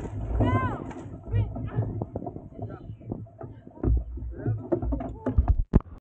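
A dragon boat crew paddling: two short rising-and-falling shouted calls in the first second and a half over the rhythm of the strokes. Then a scatter of knocks as wooden paddles clatter against the boat, with a few sharp, loud knocks near the end as the crew stops.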